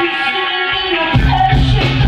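Live reggae band playing on stage, with electric guitar over the full band. The low end drops away for about the first second, then a bass note comes back in and is held.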